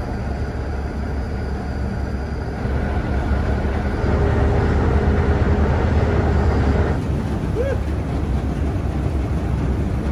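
Low, steady rumble of large ship and tug engines with churning propeller wash in a canal lock. It swells louder a few seconds in and drops back suddenly around seven seconds.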